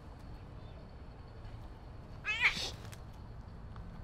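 A cat meowing once, loudly, about two seconds in, the call lasting about half a second.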